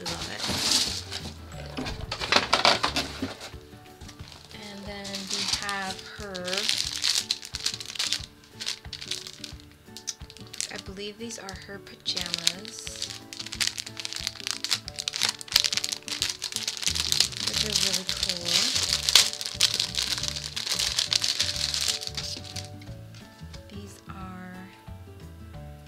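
Clear plastic bag of doll clothes crinkling and rustling in repeated bursts as it is handled and opened, over background music.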